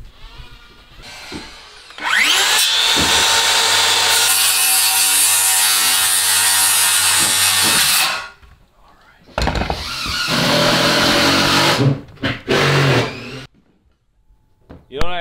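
Cordless DeWalt circular saw spinning up about two seconds in and cutting framing lumber for about six seconds, then stopping; a second, shorter cut follows near the middle, with a couple of brief blips of the saw afterwards.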